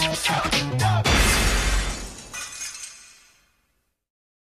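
Closing bars of a funk TV theme song, ending about a second in on one loud crash that rings out and fades away to silence.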